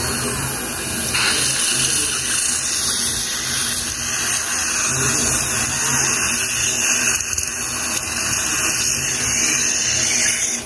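High-speed dental air-turbine handpiece with a metal-cutting bur running steadily with its water spray, cutting through a metal bridge framework in the mouth to section it into two pieces. A steady hiss of water spray and suction goes with it.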